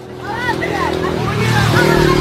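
Motor vehicle engine running at a steady pitch, with people's voices over it.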